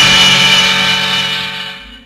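The final held chord of a 1970s Bollywood film-song orchestra, ringing on as one steady sustained chord and fading away.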